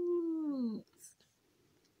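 A woman's drawn-out, wordless vocal sound, held on one pitch and then sliding down, ending just under a second in.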